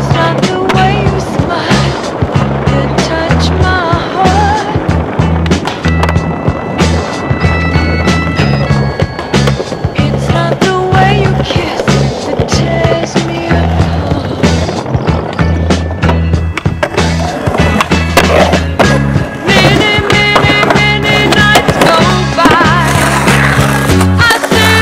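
Skateboard sounds, wheels rolling on pavement and the sharp clacks of the board being popped and landed, mixed with a music soundtrack that has a steady, repeating bass line.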